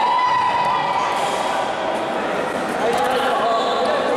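Futsal match sounds on a hard indoor court: players shouting and calling to each other, with the ball being kicked and bouncing. A long held call rings out at the start.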